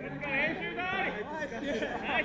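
Several footballers' voices overlapping, calling out to one another during play.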